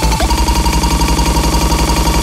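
Happy hardcore dance track. About a quarter second in, the steady kick-drum beat breaks into a rapid roll of kick hits, roughly a dozen a second, under a held high synth note.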